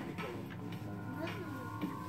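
Supermarket background sound: a steady low hum with distant voices and a few light clicks.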